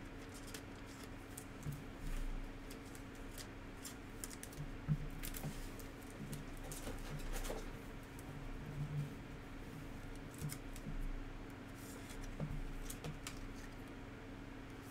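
Trading cards and a clear plastic card sleeve handled close to the microphone: scattered light clicks, taps and rustles of card stock and plastic as a card is slid into the sleeve. A steady low hum runs underneath.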